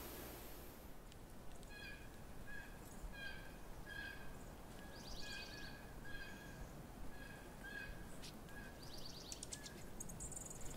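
Faint series of short, pitched animal calls, evenly spaced at about two a second, with two brief bursts of rapid clicking higher up.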